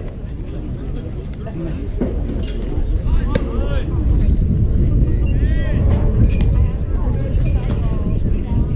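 A low, uneven rumble of open-air noise on the microphone that grows louder partway through, with short distant calls of voices from the ball field about three seconds in and again past the middle.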